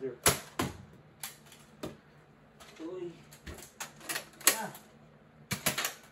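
Nerf blasters firing and foam darts striking surfaces in a string of sharp, irregular clicks and snaps, with a quick cluster of them near the end.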